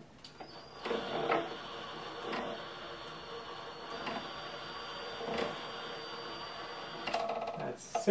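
Cordless drill running steadily for about six seconds, turning the threaded rod of a wooden test jig to press down on the specimen, with a few brief clicks along the way; it stops about seven seconds in.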